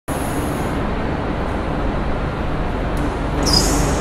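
Steady vehicle engine and road noise, with a short high hiss about three and a half seconds in.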